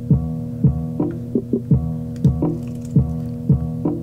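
Playback of a music loop that was recorded through a C1 Library of Congress cassette player at half speed and then sped back up two times and raised an octave in software. A held chord runs over a low kick-drum thump about twice a second. The sound is dull, with little top end.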